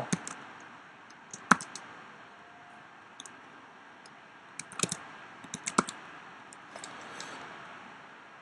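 Computer keyboard keystrokes entering terminal commands. There is a single sharp key press about a second and a half in, then a few short runs of quick taps in the second half.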